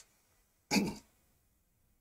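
A man clearing his throat once, briefly, just under a second in.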